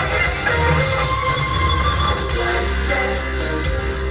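Music with guitar playing.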